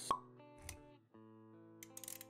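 A sharp pop sound effect right at the start, then a softer thump a little later, over quiet sustained background music that briefly drops out about halfway through.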